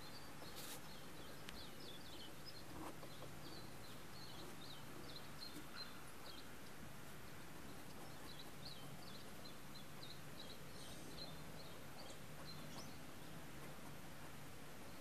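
Faint birdsong: a long run of short, high chirps repeating through most of the stretch, with a short lull in the middle, over steady outdoor background noise and a faint low hum.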